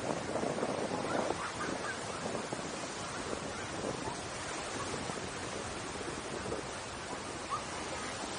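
Small waves washing up on a sandy beach, a steady surf hiss throughout, with a few short, faint higher-pitched calls over it in the first second and a half.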